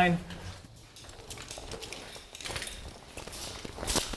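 Faint scuffing and scraping of boots moving over loose rock rubble, with a sharper click or knock just before the end.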